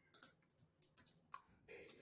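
Near silence with a few faint, scattered clicks from a computer keyboard.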